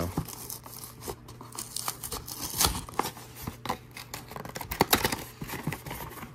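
A small cardboard Funko Bitty Pop! box being torn and pried open by hand: an irregular run of short tearing, scraping and crackling sounds from the cardboard and its flaps, loudest about two and a half seconds in and again near five seconds.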